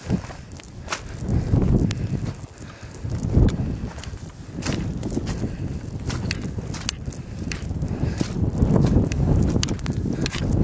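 Footsteps through moorland heather and tussock grass, with wind buffeting the microphone in low rumbling gusts that swell and fade every second or two, and scattered sharp clicks.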